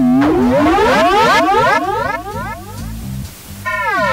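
Experimental band music with many overlapping, theremin-like tones sliding up and down in pitch, over a low repeating pulse. It is loud from the start, drops back a little after the middle, and comes back up near the end.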